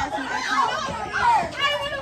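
Children's voices talking and exclaiming, unclear words, with one high voice held briefly near the end.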